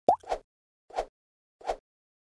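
Cartoon-style pop sound effects for an animated intro: a quick rising blip, then three short pops evenly spaced, about 0.7 s apart.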